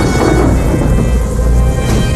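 A loud cinematic sound effect of a deep rumble with a rushing hiss, like thunder, as the Ark of the Covenant is shown open and full of smoke, under the film's orchestral score. The score's held tones come back near the end.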